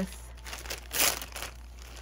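Thin clear plastic bag crinkling as it is handled, with one louder crackle about a second in.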